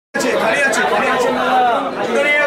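Chatter of several people talking at once, their voices overlapping in a large covered market hall.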